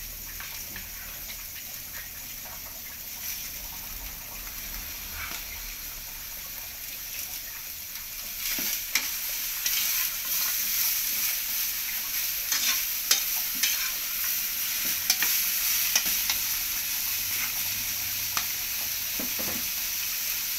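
Sliced carrots sizzling in an oiled wok. From about eight seconds in, a metal slotted spatula stir-fries them, scraping and clicking against the pan, and the sizzle grows louder.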